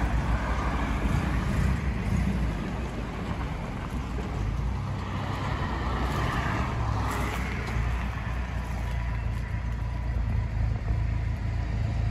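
Ford Corcel engine idling steadily, while cars passing on the road swell and fade over it, most plainly about halfway through.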